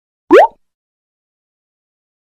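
A single short pop sound effect with a quickly rising pitch, about a fifth of a second long, as an intro graphic pops onto the screen.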